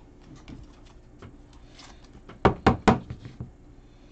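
Trading cards being handled over a table mat: faint rustling and light clicks, then three quick, sharp taps about two and a half seconds in.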